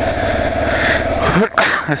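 Kawasaki KLR 650 single-cylinder motorcycle engine running steadily at low riding speed, heard through a helmet-mounted camera. A man coughs once near the end.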